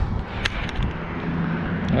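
Handling of a freshly caught crappie in a mesh landing net: one sharp click about half a second in, then a few small ticks, over a steady low outdoor hum.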